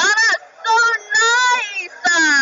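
A high-pitched voice singing or sing-songing a few drawn-out notes, the longest held for most of a second near the end.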